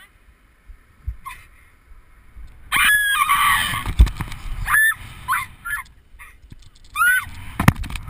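A woman screaming as she drops on a rope jump: a long scream over wind rushing across the camera starts a little under three seconds in, with a heavy thud about a second later, then a string of short yelps and a sharp knock near the end.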